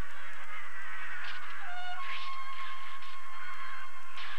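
A flock of sheep bleating, several calls overlapping at different pitches, one held for about two seconds from midway.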